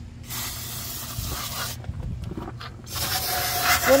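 Aerosol can of throttle body cleaner spraying in two hissing bursts: one of about a second and a half just after the start, and a second starting about three seconds in.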